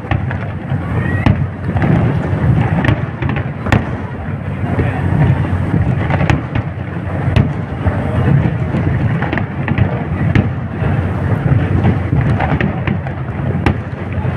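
Aerial fireworks display bursting: rapid, irregular sharp bangs over a continuous low rumble of overlapping explosions.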